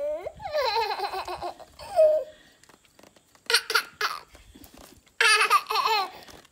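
A baby laughing in repeated high-pitched bursts of giggles, with short pauses between them.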